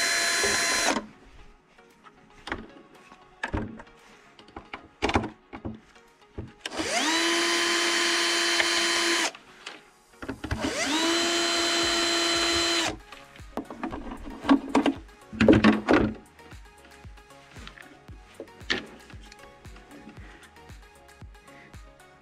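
Cordless Bosch drill-driver backing out tail-light housing screws. One run stops about a second in, then two runs of about two seconds each follow, each rising in pitch as the motor spins up, holding steady, then cutting off. Light clicks and knocks come between and after the runs.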